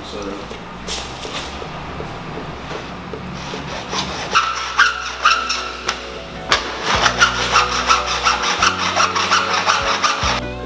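Hand saw cutting through PVC pipe. Quick, even back-and-forth strokes start about four seconds in and keep going.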